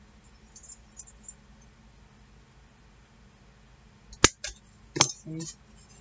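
A handheld metal hole punch working a paper tag: a few faint clicks, then two sharp clacks about four and five seconds in as the punch is used and put down, with a little paper handling.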